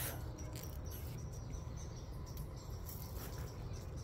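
Quiet outdoor ambience: a steady low rumble with a few faint high-pitched chirps scattered through it.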